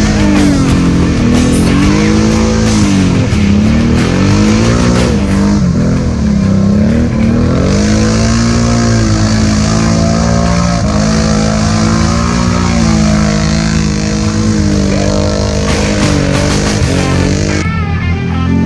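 Can-Am 570 ATV's V-twin engine revving up and down over and over, every second or two, while pushing through deep mud. The engine sound cuts off abruptly just before the end.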